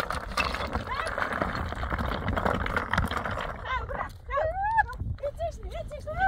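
Women crying out in high-pitched, distressed voices: short rising-and-falling cries that come thick and fast in the second half. Before them comes a dense, noisy commotion.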